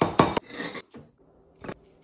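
Ceramic bowls set down on a stainless-steel counter: a quick clatter of knocks at the start, then a short scraping sound and two lighter single knocks, the last shortly before the end.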